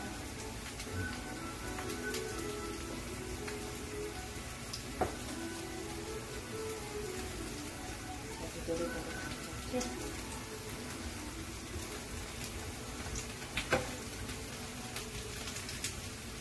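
Potato and vegetable pancakes frying in oil in a frying pan: a steady sizzle. A spatula clicks against the pan a couple of times, about a third of the way in and near the end.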